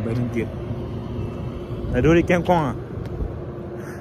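Steady low rumble of city street traffic, with a man's voice speaking briefly about halfway through.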